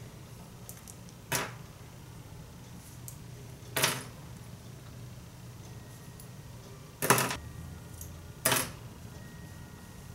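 Metal duck bill hair clips clinking as they are unclipped and taken out of pinned curls: four short, sharp clinks a few seconds apart.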